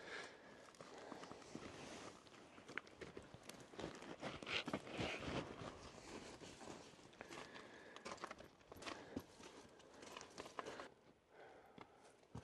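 Faint scuffing and crunching of shoes on rock and gravel as a person shifts about, with a few light clicks, busiest about four to five seconds in.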